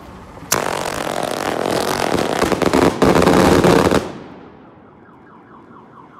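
A 100-shot rapid-fire firework going off in a fast, continuous rattle of small reports for about three and a half seconds, starting about half a second in and loudest in its last second, then cutting off with a fading hiss. A faint repeating warble follows near the end.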